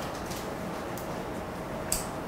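Steady room hiss with a faint hum, broken by a few faint ticks and one sharper click near the end.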